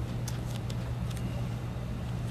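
Steady low background hum with a few faint soft clicks.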